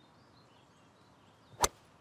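A single sharp crack of a golf club striking a ball, about one and a half seconds in, over faint birdsong.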